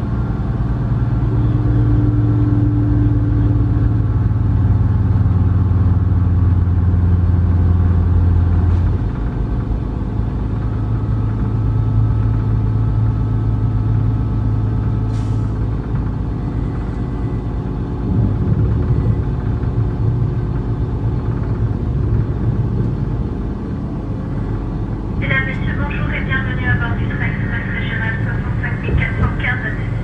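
Diesel engine of an X73500 single-car railcar heard from inside the passenger cabin, a steady low drone as the train pulls away and gathers speed, its note changing about nine seconds in. A voice comes in over it near the end.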